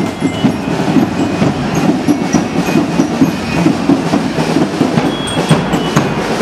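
Student marching band playing: snare and bass drums keep up a dense, steady drumming, with scattered high notes from a bell lyre.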